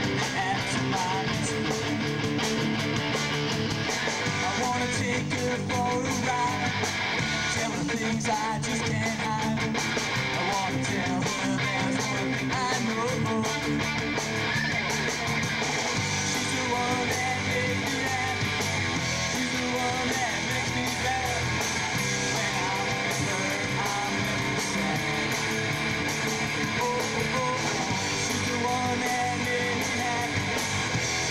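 Live rock band playing, with electric guitar leading over a steady full-band sound and no vocals.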